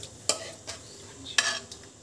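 A spoon scraping and clinking against steel cookware as cooked tomatoes are scooped into a steel mixer jar, with two sharper clinks about a second apart.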